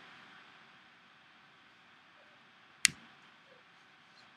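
Quiet room hiss broken by a single sharp click about three seconds in.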